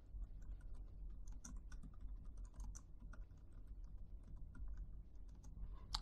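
Faint, quick keystrokes on a computer keyboard, typing out a line of text.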